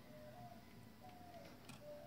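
Near silence: faint room tone, with a faint tick near the end.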